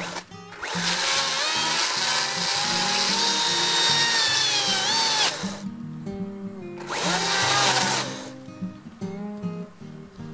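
Makita cordless electric chainsaw cutting through tree roots in two bursts: a long cut of about five seconds, its whine rising as it spins up and dropping in pitch just before it stops, then a shorter cut about a second and a half later. Background guitar music plays underneath.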